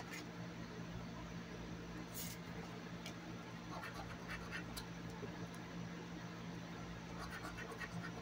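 Scratch-off lottery ticket being scratched in short, intermittent strokes over a low steady hum.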